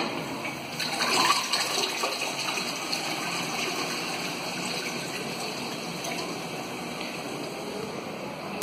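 TOTO CS230BM toilet flushing: water rushes into the bowl with a louder surge about a second in, then runs on as a steady swirl and refill.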